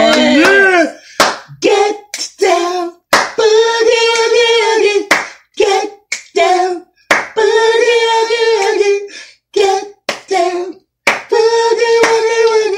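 A singing voice in a song, holding long notes with a slight waver, phrase after phrase with short breaks between. A few sharp clap-like hits fall in the gaps.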